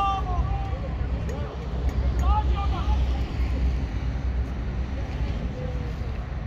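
Shouted calls from people on a football pitch: one at the start and a short one about two seconds in, over a steady low rumble.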